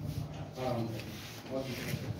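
Rubbing and rustling noise with two short stretches of faint, indistinct voices.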